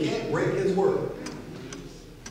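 A man preaching through the church's sound system, his speech trailing off about a second in into a short pause marked by a few faint clicks.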